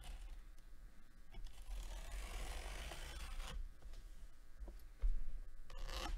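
Cardboard box being opened by hand: a rasping scrape of cardboard lasting about two seconds, then a couple of soft knocks near the end.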